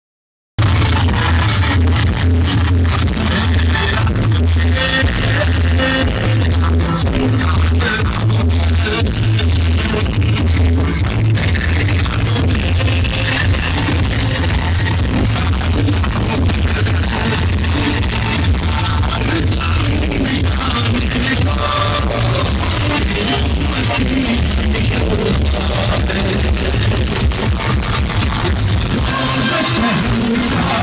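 Loud DJ music played over a large loudspeaker stack, with a heavy pulsing bass beat; it starts abruptly about half a second in.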